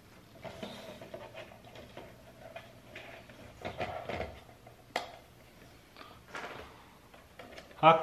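Handling of plasma lamps on a table: a few sharp clicks and soft knocks as the lamps are moved and plugged in, over a faint steady low hum.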